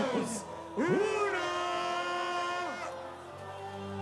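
A voice drawing out a long "one" to end a countdown, held on one pitch for nearly two seconds. Near the end a low steady bass tone from the event music comes in.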